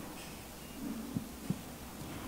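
Low steady electrical hum from the podium microphone's sound system during a pause in speech, with two faint soft knocks about a second into the pause.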